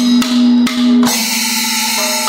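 Panchavadyam temple percussion led by a maddalam barrel drum with ilathalam hand cymbals keeping time. Ringing drum strokes come about half a second apart, then faster strokes under a steady cymbal wash from about a second in.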